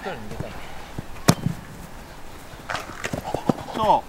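A football kicked once with a sharp thud about a second in, followed later by a lighter knock.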